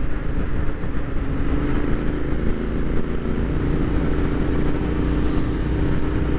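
Royal Enfield Interceptor 650's 648 cc parallel-twin engine running steadily through its aftermarket exhausts at highway cruising speed, heard from the rider's seat, with a constant drone and no change in revs.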